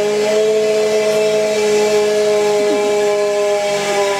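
Helium gas rushing from a pressure tank through the fill line into a weather balloon: a loud, steady whistling hiss whose pitch drifts slightly.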